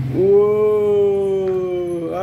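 One long, held vocal 'wooo' from a single voice, beginning a moment in and sinking slowly in pitch until the end: an exclamation of delight.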